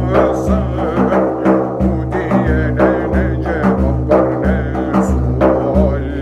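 A man singing a Turkish Sufi hymn (ilahi) in a wavering voice over a steady low drone, with a deep beat repeating about every two-thirds of a second.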